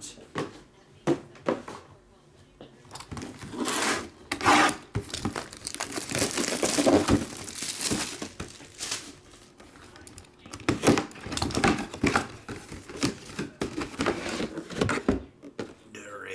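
Clear plastic shrink-wrap being torn and crumpled off a sealed cardboard box, in a long run of irregular crinkles and rips as the box is unwrapped and opened.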